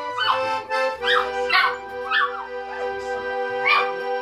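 A small dog howling along to music, in about five short howls that bend up and down in pitch over long, steady held notes of the tune.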